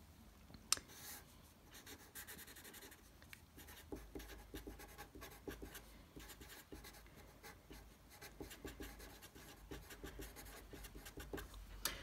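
Felt-tip marker writing on paper: a run of short, faint scratching strokes as two words are lettered out, with one sharper click just under a second in.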